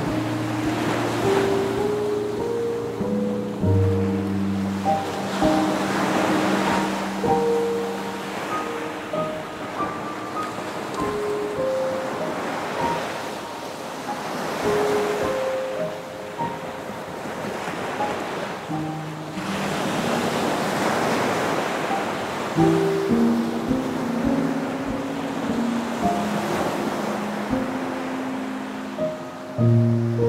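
Ocean waves washing in and out, swelling and fading every few seconds, mixed with slow, soft instrumental music of held notes.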